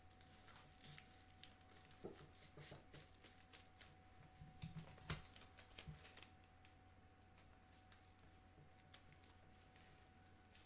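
Faint clicks and crinkles of masking tape being pressed down onto tin foil wrapped around a mannequin's forearm, over a faint steady hum. The crinkling comes in scattered bits through the first six seconds, with the sharpest click just after five seconds, then dies away to near silence.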